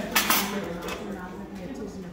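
Metal fork tapping and breaking into the chocolate shell of an egg-shaped dessert on a porcelain plate: two sharp clicks in quick succession, then fainter scraping and clinks.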